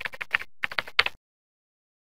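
Keyboard-typing sound effect: a quick run of about ten sharp clicks that cuts off suddenly after about a second.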